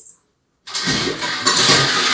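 Ice cubes rattling and crunching as a scoop digs into a metal ice bucket. It starts after a brief pause, under a second in, and carries on as a dense, continuous clatter.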